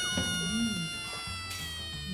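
A high, whistle-like tone sliding slowly down in pitch for nearly two seconds, over a woman's low 'mmm' as she eats.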